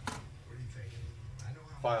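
A man speaking: a pause mid-sentence, then a word near the end, over a steady low hum. A single sharp click at the very start.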